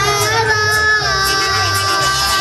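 A young boy singing into a microphone over mariachi music, holding long notes, with a pulsing bass beneath.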